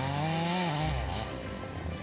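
Chainsaw engine revving, rising in pitch and then dropping back about three-quarters of a second in, over background music.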